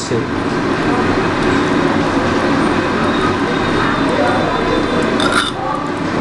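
Squelching of a hand kneading and smearing a wet mustard, turmeric and poppy-seed paste onto pieces of rui fish in a steel bowl. It is heard over steady background noise, with a sharp knock against the bowl about five seconds in.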